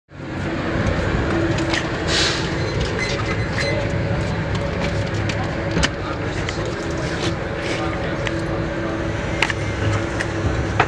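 Steady low hum and rumble inside a van, with a few scattered clicks and a short hiss about two seconds in.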